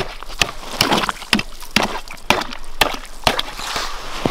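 Ice chisel stabbing down into snow-covered lake ice, chipping out a test hole in ice about two and a half inches thick: eight or so sharp crunching strikes, about two a second.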